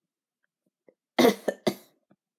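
A person coughing, a quick run of three coughs about a second in, the first the loudest.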